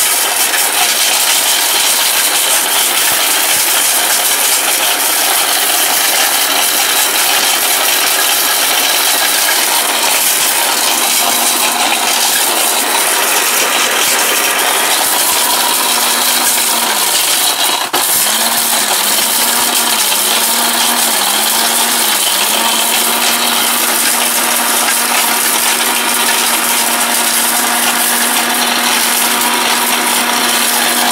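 ORPAT mixer grinder running at full speed, with hard pieces of dried turmeric rattling in its stainless-steel jar as they are ground to powder. Around two-thirds of the way through, the motor's hum dips several times in quick succession, then steadies.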